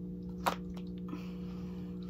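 White cardboard Apple Watch box being pulled open by hand: one sharp click about half a second in, a few faint ticks, then a soft sliding hiss, over a steady low hum.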